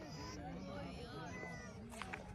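A resting herd of camels calling: many short, overlapping calls that each rise and fall in pitch.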